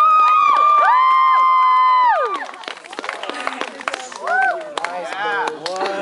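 Audience cheering: several high voices hold long shrieks together for about two seconds, then it breaks into scattered clapping and chatter.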